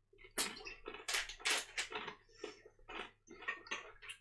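A person chewing a mouthful of trail mix with corn nuts and peanuts, a run of irregular crunches.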